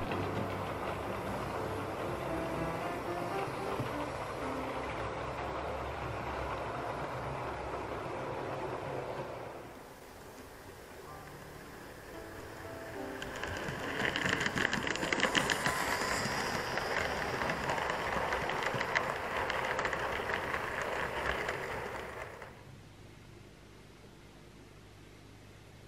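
OO gauge model train, a Hornby Merchant Navy class locomotive hauling four coaches on plastic wheels, running steadily on the track. Midway it grows louder with rapid clicking of the wheels over the rail joints as it comes close, then cuts off suddenly near the end.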